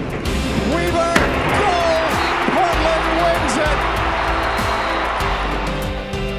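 Stadium crowd cheering and screaming, swelling suddenly right after a sharp thump about a second in, over background music.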